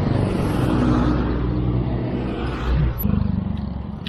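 Motor vehicle engines passing close by, an oncoming pickup truck and a motorcycle, heard as a steady low engine hum over wind and road noise on a moving bicycle's camera; the engine note shifts about three seconds in and fades toward the end.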